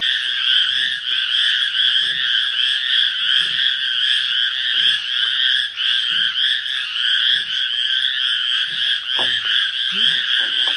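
A dense chorus of frogs calling at night: a steady, high, pulsing trill. Beneath it are faint, irregular crunches of a giant panda chewing bamboo stalks.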